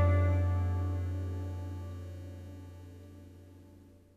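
The last chord of a santoor, Afghan rubab and tabla trio ringing out after the final stroke and dying away: a low bass tone under a cluster of string overtones, fading steadily to almost nothing near the end.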